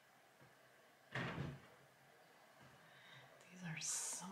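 A quiet room broken by one short burst of noise about a second in, lasting about half a second. Near the end comes a brief low vocal hum with a breath.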